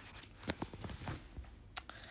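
Two light taps of a stylus on a tablet screen, about a second and a quarter apart, with faint scratching between them.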